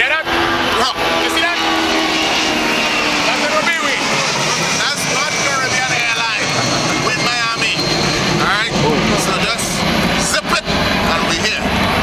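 Several men talking and calling out loudly and excitedly over a steady hum of vehicle traffic.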